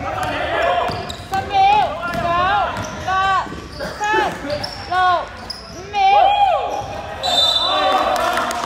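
Basketball shoes squeaking on a sports-hall floor as players cut and stop: a run of short, sharp squeaks that rise and fall in pitch, with a ball bouncing. A referee's whistle sounds briefly near the end.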